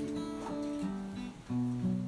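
A guitar playing held chords, with a brief dip and then a new, louder chord struck about one and a half seconds in.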